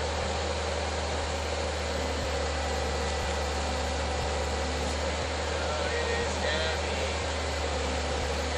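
Excavator's diesel engine running at a steady speed, a constant low drone, while it holds a suspended concrete septic tank.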